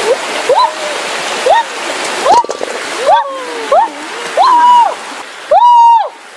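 A high voice calls out again and again, each call sliding up, holding briefly and falling, about eight in all, the longest and loudest near the end, over a steady rushing hiss.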